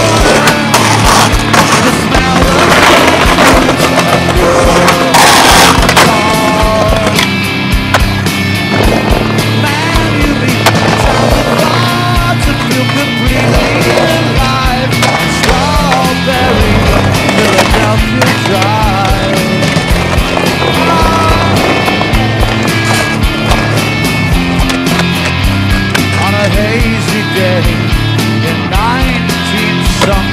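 Skateboards rolling and clacking on concrete, with sharp knocks of boards popping and landing, mixed with loud music.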